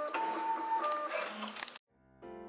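A self-service postal stamp machine running with a printer-like whir and steady electronic beep tones, cutting off suddenly near the end.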